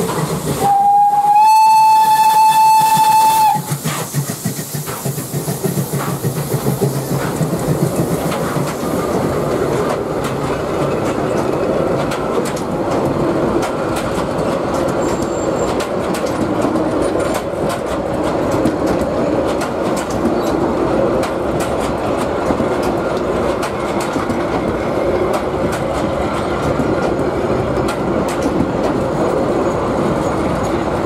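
Px29-1704 narrow-gauge steam locomotive blowing its steam whistle: one steady blast of about three seconds near the start. Then the coaches roll slowly past with a steady rumble, the wheels clicking over the rail joints.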